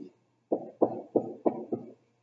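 Dry-erase marker writing on a whiteboard: a short stroke at the start, then five quick strokes about three a second from half a second in, as characters of an equation are written out.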